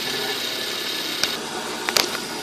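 Bench grinder motor running steadily with a buffing wheel on its shaft, giving a continuous, even whir. Two short clicks come near the end.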